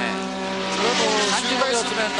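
Engine of a Rothmans works Porsche Group C prototype running on the circuit, a steady engine note heard under the commentary.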